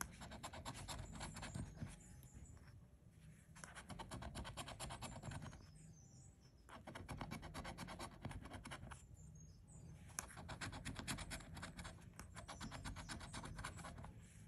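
A coin-shaped scratcher scraping the coating off an instant lottery scratch-off ticket in rapid back-and-forth strokes. It comes in four bursts with short pauses between them.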